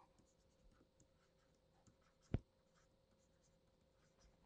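Near silence with faint scratching of a stylus writing on a pen tablet, and one short soft click a little past halfway.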